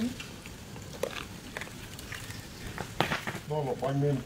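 Low outdoor background with a few scattered short clicks and crackles, then a man's voice starts talking about three and a half seconds in.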